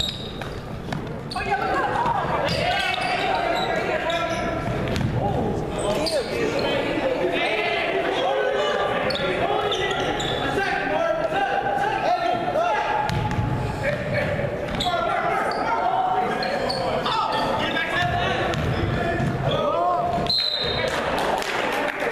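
Voices of players and spectators calling out during a basketball game in a large gym, overlapping throughout, with a basketball bouncing on the hardwood floor now and then.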